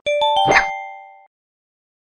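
Logo sound effect: a quick run of four bright, bell-like chime notes, each starting with a small click, then a fuller hit, the notes ringing on briefly and fading out.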